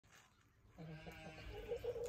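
Hen making soft, low clucking calls while feeding: a faint run of short pitched notes that starts about three-quarters of a second in.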